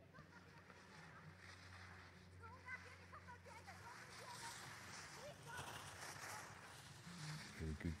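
Faint ambience: a quiet hiss over a low steady hum that fades about halfway through, with faint fragments of distant voices.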